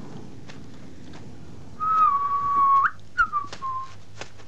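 A person whistling two notes: a long, nearly level note that flicks upward at its end, then a shorter note that slides down.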